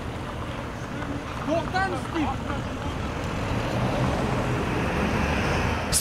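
City bus engine running and pulling away, its low rumble growing louder over the last few seconds.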